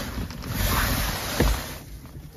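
Rushing noise with low rumbles on the microphone, typical of a handheld phone being moved about, and a soft knock about one and a half seconds in. The noise thins out near the end.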